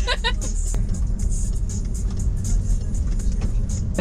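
Steady low rumble of a car's engine and road noise heard from inside the cabin as it drives off, after a short laugh at the start.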